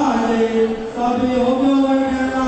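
A person's voice chanting or intoning in long, held notes that step slightly up and down in pitch.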